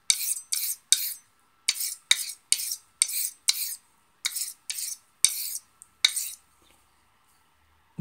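Stainless Henckels straight razor stroked across a DMT 600 diamond plate to set its bevel: a quick run of about a dozen short, bright scraping strokes that stops about six seconds in.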